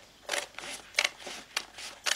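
Scissors snipping through a sheet of label stickers, several short separate cuts.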